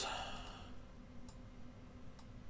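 A single faint computer mouse click a little past the middle, over quiet room tone with a low steady hum.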